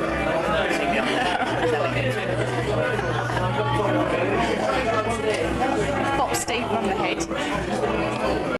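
Pub chatter: many people talking over one another, no single voice standing out, with music playing low underneath.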